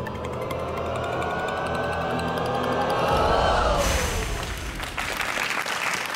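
Game-show score countdown effect: an electronic tone slides in pitch while the score column counts down, then cuts off a little under four seconds in with a sudden burst of noise as the count stops. Studio audience applause starts near the end.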